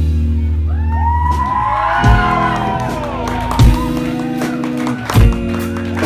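Live funk band playing in a hall: held bass notes and a kick drum about every second and a half, with sliding high calls over the music in the first half.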